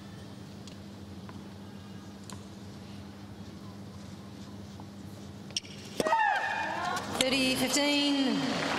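Hushed tennis arena with a few faint ball bounces. About five and a half seconds in comes the sharp strike of a serve, then loud, falling shrieks from the players as the ball is hit back and forth.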